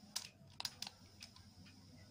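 A few sharp plastic clicks from the control keys of a Sony TCM-30 cassette recorder being pressed, most of them in the first second.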